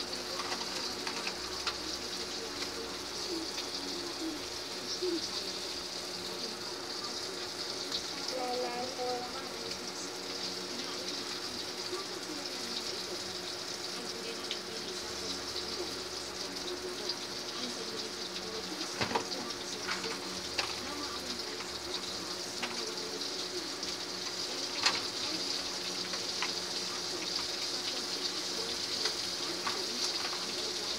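A steady hiss with a low hum under it throughout, and a few sharp plastic clicks and knocks from a toy vehicle being handled on a tile floor. The loudest clicks come about two-thirds of the way in and again later on.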